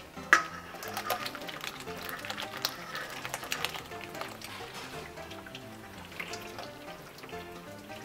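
Background music, over hot cooking water being poured off boiled okra from a metal saucepan into a sink strainer. There is a sharp clank of the pot at the start and splashing for the first few seconds.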